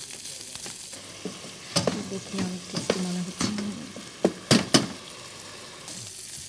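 Beef and broccoli sizzling in a frying pan while a wooden spatula stirs them, scraping and knocking against the pan, with a few sharp knocks in the second half.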